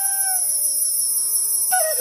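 Intro music on a bamboo flute: a held note ends about half a second in, leaving a steady high shimmer and a soft drone for about a second. Near the end the flute comes back in with a falling then rising glide.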